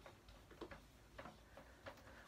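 Faint ticks and taps of a marker tip on a whiteboard while writing, a handful of short clicks over a near-silent room.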